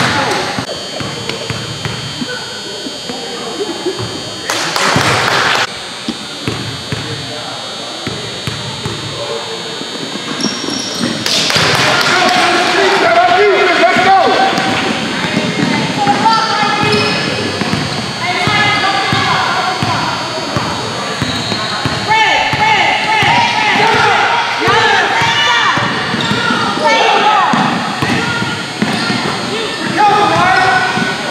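A basketball dribbled on a hardwood gym floor during play, with repeated bounces. Players and spectators shout over it, and the voices grow louder and busier about 12 seconds in. Two short, loud rushes of noise come about 5 and 11 seconds in.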